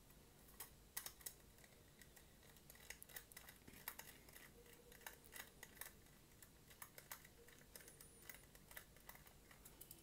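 Faint, irregular small clicks and ticks of a precision screwdriver turning out the tiny screws in the end cap of an aluminium Transcend StoreJet 25S3 drive enclosure, the bit catching in the screw heads and knocking on the metal case.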